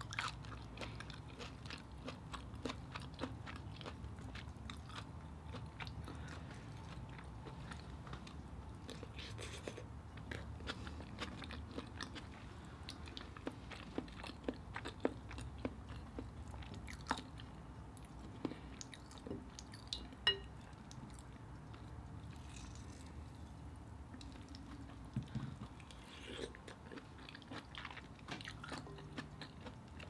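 Faint chewing and eating of steamed mussels, with many scattered small clicks and taps as the mussels are picked up and dipped, over a low steady hum.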